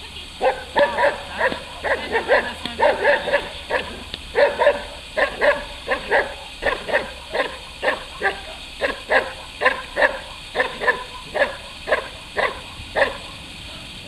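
Belgian Malinois barking hard and repeatedly at a decoy in protection training, about two to three barks a second. The barks start about half a second in and stop a second before the end.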